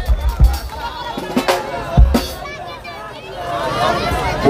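A deep live drum beat stops about half a second in, followed by one more loud drum hit about two seconds in, over the voices of a large crowd.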